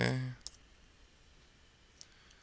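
A single sharp click from a computer keyboard keystroke about half a second in, then low room noise and another faint click, a mouse click, at the very end.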